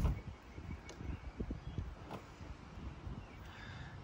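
Wind buffeting the microphone outdoors: an uneven low rumble, with a few faint ticks.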